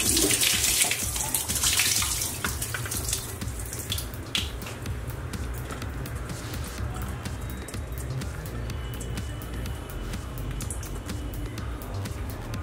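Wash water being drained off a pot of cut fish past a lid held over the rim: a splashing pour in the first few seconds, then a quieter trickle and drip. Background music with a steady low beat plays under it.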